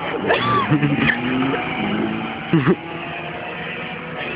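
A car's engine running steadily, with a low, even hum.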